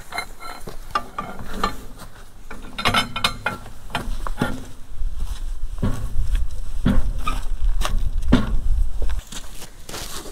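Irregular metallic clinks and knocks of a long wrench and socket working a seized precombustion chamber back and forth in the threads of a Caterpillar D2 diesel cylinder head. A low rumble runs under the knocks from about four seconds in until about nine.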